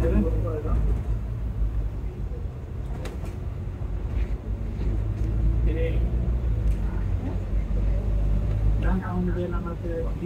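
Volvo B9TL double-decker bus's diesel engine running as the bus drives along, a steady low rumble heard from the upper deck that is loudest in the middle and eases near the end, with passengers talking at the start and near the end.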